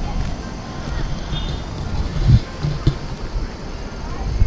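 Wind buffeting the camera's microphone, an uneven low rumble. A faint ticking beat of background music runs under it.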